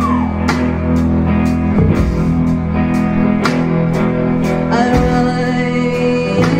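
A live rock band playing: electric guitars and bass over a drum kit keeping a steady beat of about two strokes a second.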